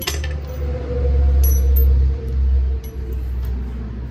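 Small metal hardware clinking a few times as a nut is hand-tightened onto a bolt in the front suspension, with light metallic rings. A loud low rumble runs underneath and swells about a second in.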